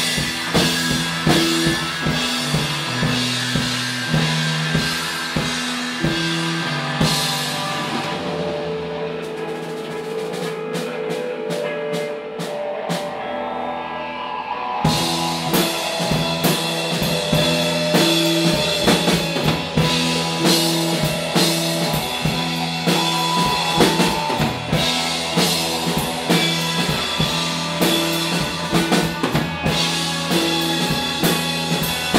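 Live rock band playing an instrumental jam on drum kit, electric guitar and bass. About eight seconds in, the drums and cymbals drop away, leaving held guitar and bass notes over a light regular ticking. The full band comes back in at about fifteen seconds.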